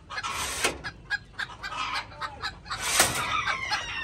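Chickens clucking in their pens, with a rooster crowing in the background.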